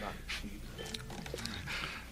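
A lull between voices: a low, steady hum on the old broadcast tape, with a few faint, indistinct room sounds.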